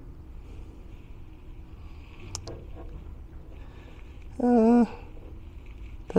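Light handling clicks, two in quick succession, as fingers work a wire at a solder joint on a battery's BMS board. About four and a half seconds in comes a brief hummed 'mm' of hesitation from a man's voice, the loudest sound here. A steady low hum runs underneath.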